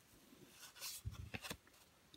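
Faint handling of cardboard baseball cards: a soft brushing as a card is slid off the front of a stack by hand, then a few light ticks.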